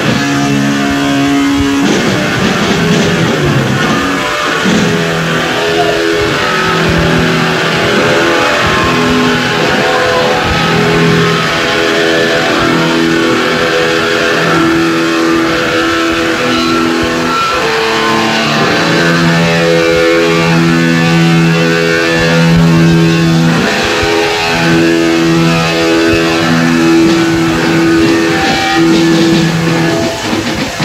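Hardcore punk band playing live, a distorted electric guitar riff of held chords changing every second or two over the band, heard on a muddy old cassette tape dub.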